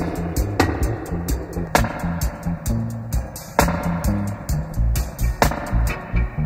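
Instrumental passage of a roots reggae song with no singing: drum kit hits in a steady rhythm over a deep bass line.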